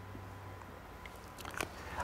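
Quiet room with a steady low hum, and a few faint clicks near the end as whiteboard markers are handled.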